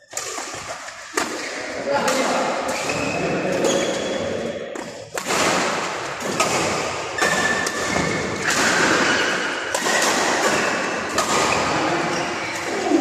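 Badminton rackets striking a shuttlecock during a doubles rally, sharp hits about once a second, over a background of voices in the sports hall.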